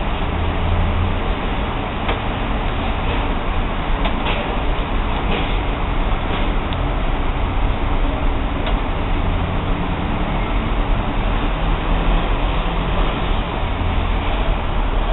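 Steady hiss with a low rumble underneath, with a few faint light clicks a second or two apart in the first half, from small handling of the rubber bands and crochet hook.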